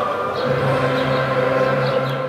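A group of voices singing together in long held notes, with lower voices coming in about half a second in.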